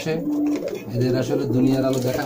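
Low, drawn-out cooing calls: a shorter, higher held note near the start, then a longer, lower one from about halfway through.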